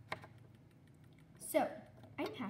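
A single small tap just after the start, then a short wordless vocal sound about a second and a half in.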